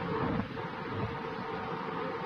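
Hiss with a steady hum from an old tape recording of police radio traffic, in a gap between transmissions.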